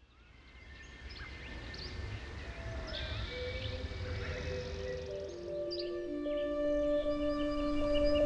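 Wild birds chirping and whistling in short calls over forest ambience, fading in from near silence. Soft background music enters a few seconds in, its held notes stepping down in pitch and growing louder.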